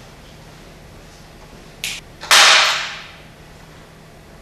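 A brief high swish, then a loud whoosh about two seconds in that fades away in under a second. It is a sound effect marking a person suddenly appearing.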